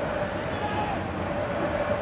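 Steady, even crowd noise from a football stadium, with no single shout or cheer standing out.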